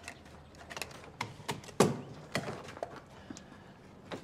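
Irregular footsteps and light knocks and clatter from a rolling suitcase being handled, the loudest knock a little under two seconds in.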